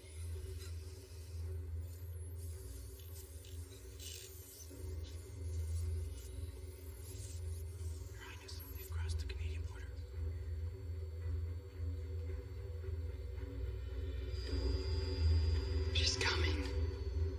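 Film soundtrack: a low, sustained drone with held tones, with a few faint high sounds scattered through it. A steady high-pitched tone comes in near the end.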